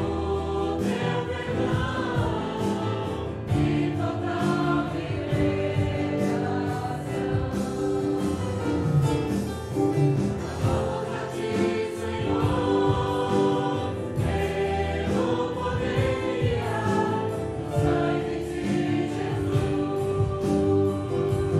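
A group of voices singing a Portuguese hymn, accompanied by an electric keyboard, a drum kit and guitar, with a steady beat of drum and cymbal hits.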